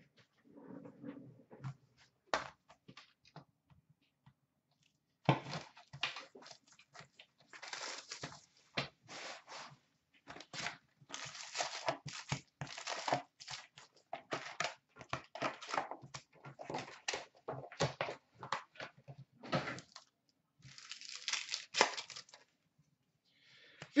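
A sealed box of hockey trading cards and its foil packs being opened by hand: irregular tearing, crinkling and rustling of wrapper and pack foil as the packs are pulled out and ripped open. The first few seconds hold only a few faint clicks; the handling noise starts about five seconds in and goes on in bursts until near the end.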